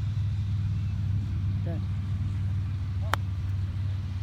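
A golf club strikes a ball from the turf once, a sharp crack about three seconds in, over a steady low hum.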